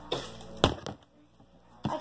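Plastic water bottles being flipped, giving a sharp knock as they land a little over half a second in and a second, weaker knock near the end. The two-bottle flip fails.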